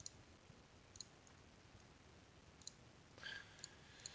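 Near silence with a few faint, short computer mouse clicks spread over the few seconds.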